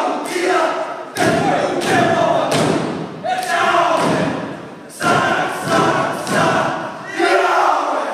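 Group of men shouting a Māori haka chant in unison, punctuated by sharp body slaps and foot stamps on the stage, roughly one to two a second.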